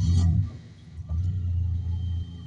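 Low car-engine rumble that starts abruptly, fades for about half a second, then comes back loud for about a second.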